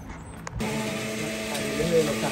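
Countertop blender running steadily, its motor starting suddenly about half a second in.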